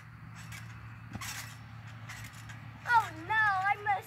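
A few soft knocks and rustles from a backyard trampoline's mat as a boy bounces and drops onto it, then near the end a child's loud voice calling out with a wavering pitch.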